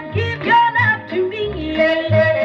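A 78 rpm record playing a mid-1950s rock-and-roll pop recording with orchestra: a lead melody line bends in pitch over a bouncing bass line.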